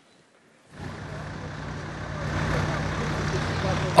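Heavy vehicle engines idling, a steady low hum with traffic noise that starts about a second in and grows slightly louder.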